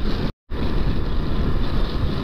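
Motorcycle running at cruising speed, heard from the handlebars with wind rushing over the microphone. The sound cuts out completely for a moment about half a second in, at an edit, then carries on the same.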